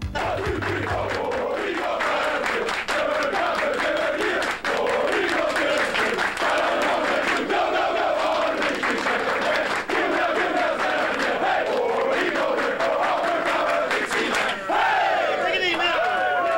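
A large group of football players shouting and chanting together in a loud, continuous victory celebration, many voices at once. Background music fades out about a second in.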